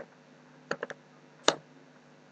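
Computer keyboard keystrokes while typing and correcting a line of code: a single key, a quick run of three, then one louder key, over a faint steady hum.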